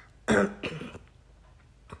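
A woman clearing her throat: a short rasp about a quarter second in, with a softer one right after. Then quiet room tone with a faint click near the end.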